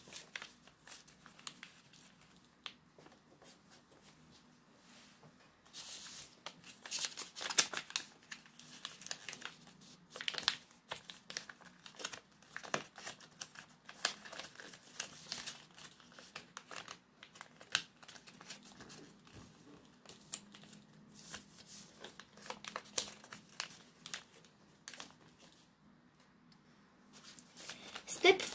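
A sheet of paper being folded and creased by hand, with intermittent crinkling and rustling. It is sparse at first, busiest from about six seconds in, and quieter again near the end.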